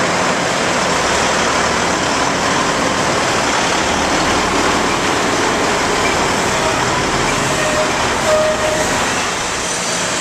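Milk tanker semi-truck's diesel engine running as it pulls slowly into an enclosed receiving bay, under a loud, steady noise that fills the whole range. The engine's low sound swells for a few seconds around the middle.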